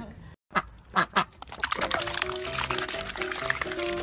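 A few short, sharp sounds from domestic ducks feeding at a tub of water, about half a second to a second in, then background music with steady held notes from about two seconds in.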